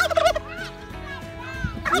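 A male domestic turkey gobbling: one loud, rapid, warbling gobble at the start, followed by softer wavering calls.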